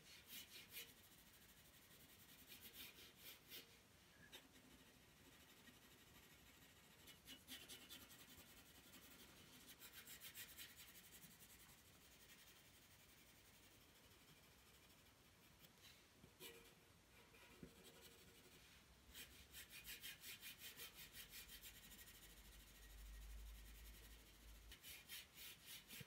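Faint scratching of a pencil on paper: runs of quick back-and-forth shading strokes, with pauses between them.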